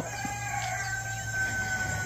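A rooster crowing faintly: one long drawn-out crow, held on a single note that sags slightly in pitch. There is a steady low hum underneath.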